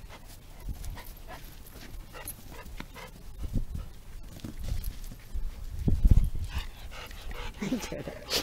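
Golden retrievers panting, with a few low rumbles from handling or wind on the microphone about halfway through.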